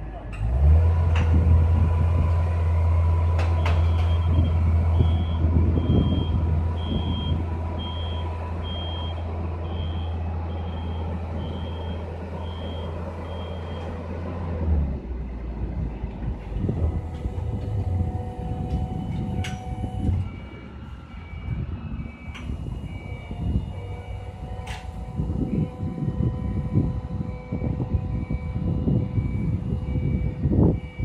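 Boom lift's motor running with a loud low hum while its motion alarm beeps at a regular pace as the basket is lowered; the hum cuts off about halfway through. Later a second, lower-pitched warning beeper starts up, with a few sharp metal knocks along the way.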